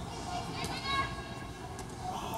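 Indistinct chatter of spectators and players' voices in an indoor sports hall, with no clear words, over a steady low hum of room noise. A couple of faint ticks come through, the first about a second in and the second near the end.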